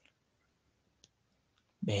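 Near silence in a pause between spoken sentences, with a single faint click about a second in; speech resumes just before the end.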